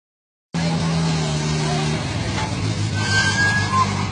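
Maruti Gypsy jeep engine running as the vehicle drives up and slows. The engine note drops in pitch about halfway through, over the voices of an onlooking crowd. The sound starts half a second in.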